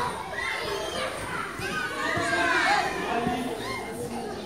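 Many children and adults talking at once, with the high voices of young children at play over the adults' chatter.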